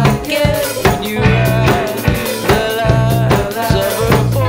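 Upbeat indie rock song with a drum kit keeping a steady beat of snare and bass drum under a melody line that bends in pitch.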